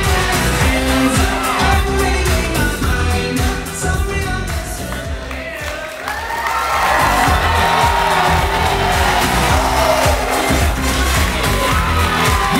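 Pop song with singing over a steady beat, played over a dance floor; the music thins out about five seconds in. From about six seconds in, an audience cheers and whoops over the music.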